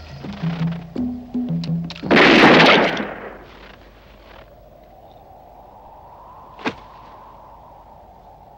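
Film score of pulsing low, wood-block-like notes, cut off about two seconds in by a revolver shot, a loud blast lasting about a second. Then a faint drone slowly rising in pitch, with one sharp click near seven seconds.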